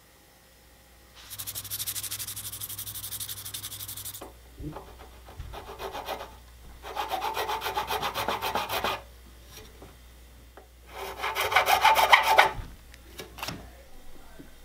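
A thin nut-slotting file cutting string slots in a guitar nut, in three spells of quick back-and-forth scraping strokes with short pauses between them; the last spell is the loudest.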